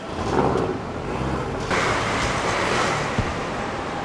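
Street traffic: a motor vehicle's engine is heard close by in the first second and a half, then a louder steady rush of traffic noise sets in suddenly, with one sharp click near the end.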